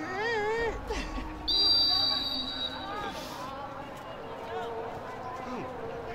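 A referee's whistle blows once, a steady high blast of about a second, and is the loudest sound here. It is preceded by a wavering, drawn-out voice and followed by a few short voices.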